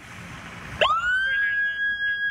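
Ambulance siren starting up: about a second in, a wail sweeps quickly up to a high pitch and holds steady, over a faint hiss and rumble.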